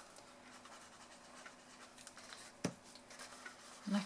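Faint handling of a card gift box on a craft mat, with light scratchy rustling and a single sharp tap about two-thirds of the way in. A faint steady hum sits under it.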